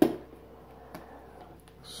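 Knife blade slitting the packing tape along a cardboard box's seam: one sharp rip right at the start that fades over a fraction of a second, then only faint scraping and a small click about a second in.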